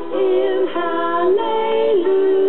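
Female voices singing a gospel song, moving through about three held notes of roughly half a second each.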